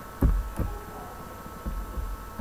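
A few short, dull low thumps, the first about a quarter second in and the loudest, over a faint steady hum.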